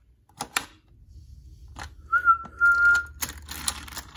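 A single steady whistle note lasting about a second, standing in for the toy engine's whistle as it sets off. Scattered plastic clicks come before it, and the clicks and rattles of toy trains being handled follow it.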